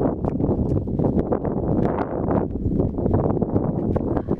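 Wind buffeting the microphone, a steady low rumble, with a few small knocks and footfalls mixed in.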